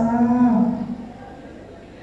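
A man's long, held low vocal call through a microphone and PA, one steady note that fades out under a second in, leaving low hall noise.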